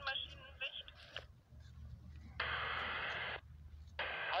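Air-band radio receiver tuned to the tower frequency: a radio voice trails off in the first second, then a burst of radio static hiss lasting about a second switches on and cuts off sharply past the halfway point.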